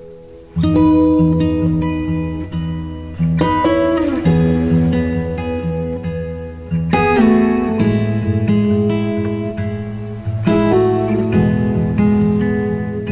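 Background music: acoustic guitar strumming chords. It comes in loudly about half a second in, after a quieter held tone.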